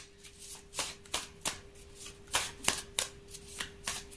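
A tarot deck being shuffled by hand, the cards slapping together in short, irregular strokes, about two a second.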